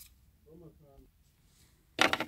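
Near silence, with a brief, faint murmur of a man's voice about half a second in.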